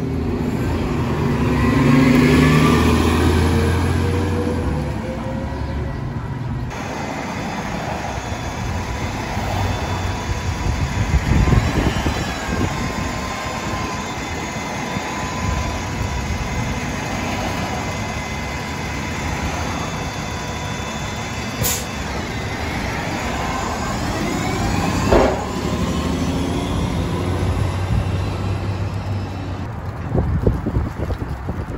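City transit buses passing at close range. First a bus engine rises in pitch as it pulls past, loudest about two seconds in. Then a CNG bus engine runs with a steady whine from close behind its rear grille, rising again as the bus pulls away, with a sharp burst about three-quarters of the way through.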